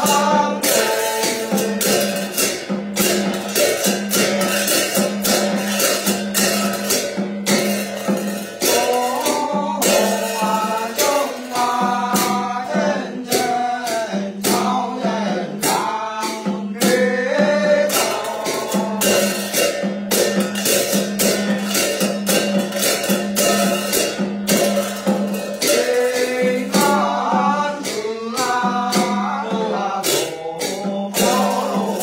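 Tày ritual chanting: a voice sings a wavering, melismatic chant over a steadily shaken jingling bell rattle, with a plucked string instrument sounding a repeated low note.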